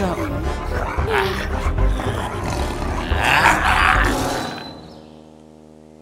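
A tiger's roar sound effect over background music, loudest about three to four seconds in, then fading out about five seconds in.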